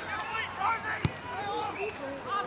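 Players' distant calls and shouts on the field, with one sharp knock about a second in from the Australian rules football being struck.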